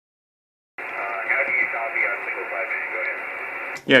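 Another station's voice received over 2 m single-sideband from a small transceiver's speaker: thin, narrow radio audio over band hiss, starting under a second in and cutting off just before the end. The signal is weak, showing no S units on the meter, yet fully readable.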